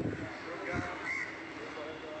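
Faint distant voices over open-air background noise, with a single soft low thump about three-quarters of a second in.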